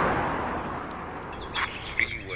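A rushing whoosh of noise fading away, then birds chirping in short high calls near the end.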